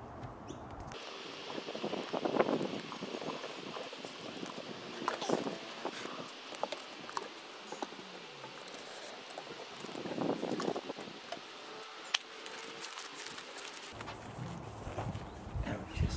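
Soft rustling and light clicks over a steady hiss, from gloved hands drawing a needle and cotton twine through a lamb carcass to sew the cavity shut.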